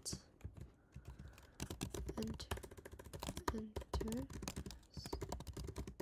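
Typing on a computer keyboard: a quick run of key clicks, sparse for the first second or so, then rapid and close-packed.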